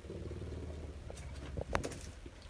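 Pet puma purring, a steady low rumble, with a couple of faint clicks near the end.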